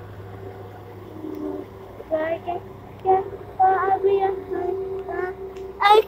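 A young child singing wordless held notes in several short phrases, starting about two seconds in, over a low steady hum.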